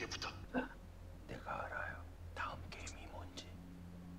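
Faint whispered speech in short phrases with pauses between them, low in volume.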